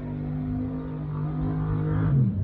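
A car engine running at a steady, even pitch, growing a little louder toward the end.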